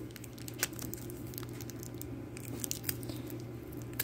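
Small clear plastic bag crinkling in scattered brief crackles as fingers pick at its taped seal, which will not peel open. A low steady hum runs underneath.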